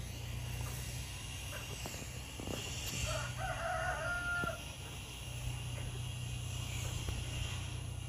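A rooster crowing once, about three seconds in, for about a second and a half, over a low steady rumble.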